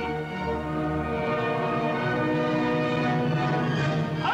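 Opera orchestra playing long held chords with no voice; the lowest notes drop out about a second in.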